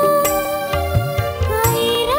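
Film song: a high voice, likely a woman's, holding long drawn-out notes and gliding up to a higher note near the end, over instrumental backing with a low, recurring drum beat.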